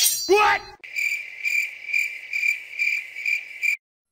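Cricket chirping in a steady high-pitched rhythm of about two chirps a second, cutting off abruptly shortly before the end. It is preceded in the first second by a short, louder squeal that glides in pitch.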